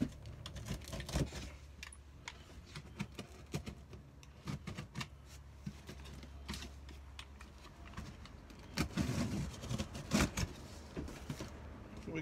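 Packing tape on a cardboard box being slit with a utility knife: scattered small clicks and scrapes of blade, tape and cardboard. Louder cardboard rustling and scraping about nine seconds in as the box flaps are pulled open, over a low steady hum.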